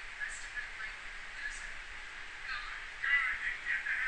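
Quiet background hiss between spoken passages, with faint high-pitched warbling sounds in the second half whose source is unclear.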